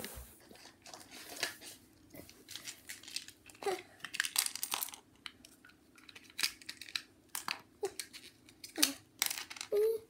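Packaging being handled: irregular crinkling and rustling with scattered small clicks and knocks, broken by a few short vocal murmurs.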